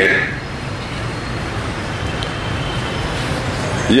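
Steady background noise with no speech: an even hiss spread across the whole range, with a faint low hum underneath.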